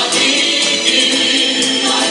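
A choir singing a song live, continuous and loud.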